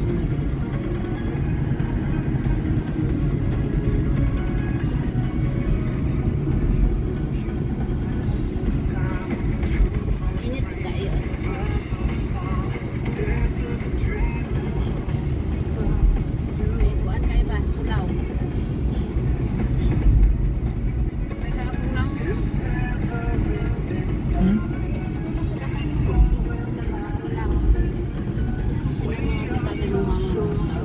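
Steady low road rumble inside a moving car's cabin, with music playing over it.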